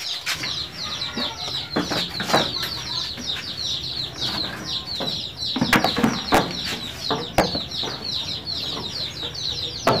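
Birds chirping in a rapid, steady series of short high downward chirps, about five a second, with a few sharp knocks in between.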